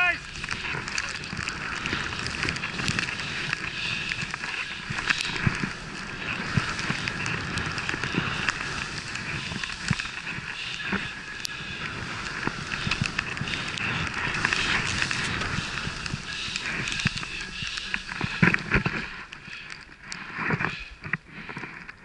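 Skis running through deep powder snow: a steady hiss and rush of snow, with scattered short knocks and scrapes. It eases off somewhat near the end.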